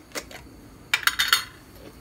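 Metal screw lid of a glass jar being twisted open: a single click just after the start, then a quick run of clicks and clinks about a second in.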